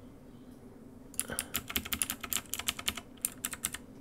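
Computer keyboard keys tapped in a quick run of about twenty clicks over two and a half seconds, starting about a second in.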